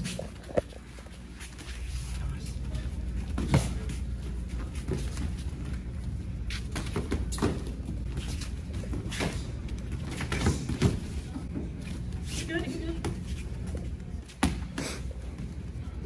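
Punches and kicks from kickboxing gloves and shin guards landing during sparring: sharp slaps and thuds at irregular intervals, a dozen or so over the stretch, over a steady murmur of onlookers' voices. Someone exclaims "Oh" near the end.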